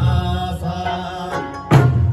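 Eisa drumming: large ōdaiko barrel drums and small hand drums struck in unison by a troupe of dancers. The boom of a hit just before is still dying away at the start, and a fresh heavy hit comes near the end. Both ride over a sung Okinawan folk melody played through loudspeakers.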